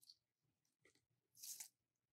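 Hand pruners snipping through a rose cane: one short cut about one and a half seconds in, with a faint click at the start.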